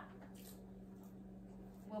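Quiet kitchen room tone with a steady low hum and a faint tick about half a second in; a woman's voice starts right at the end.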